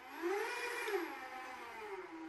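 ActSafe ACC battery-powered rope ascender's electric motor whining as it winds the rope and lifts a technician. The pitch rises as it speeds up, then drops about a second in and the sound fades.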